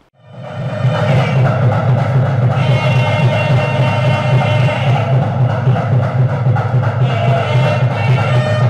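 Traditional temple music of drums and a wind instrument over a steady low drone, fading in during the first second.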